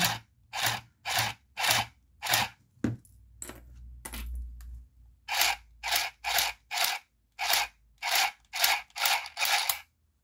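Handheld mini sewing machine stitching lace onto paper card in short bursts, each a fraction of a second, about two a second, as it is run slowly. The bursts pause for about two seconds in the middle.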